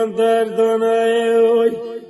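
Turkish folk song with one long held vocal note that wavers slightly. It breaks off shortly before the end, and shorter, lower notes follow.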